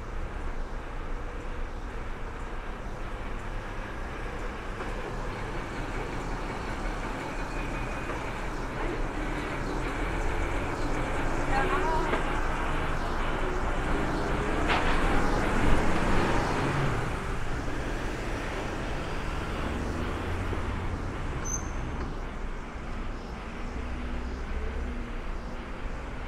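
City street traffic dominated by a coach's diesel engine close by, growing louder with a rising engine note to a peak about fifteen seconds in as it pulls away, then fading back into the general traffic.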